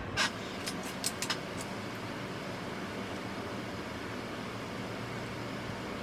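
A few small clicks and taps in the first second and a half as a lip gloss tube is opened and the gloss applied. A steady low hum runs underneath.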